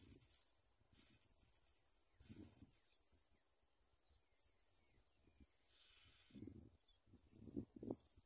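Faint, very high-pitched begging cheeps of bar-winged prinia nestlings, coming in short bursts, with a few soft low rustles in the second half.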